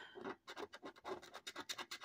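A coin scraping the scratch-off coating of a $3 Oro Colorado lottery ticket in quick, short strokes, about seven a second, faint.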